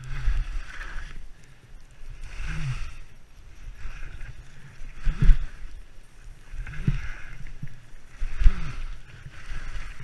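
Skis swishing through soft, chopped-up snow on each turn, repeating every one and a half to two seconds, with short low thumps as the skis go over the bumps.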